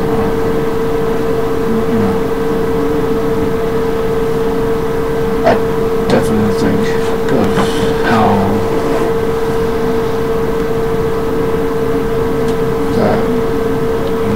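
A steady hum with a single constant tone, unchanging throughout. Faint voice traces come through in the middle and near the end.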